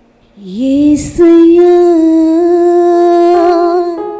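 A woman singing solo into a microphone. About half a second in her voice slides up and settles into one long held note with a light vibrato.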